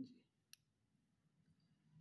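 Faint handling of a hammer drill's gearbox and armature: a soft knock right at the start and one sharp metallic click about half a second in, as the gear assembly is turned by hand.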